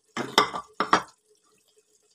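A spatula knocking and scraping against a metal cooking pot while stirring meat in tomato gravy: three or four quick clatters in the first second.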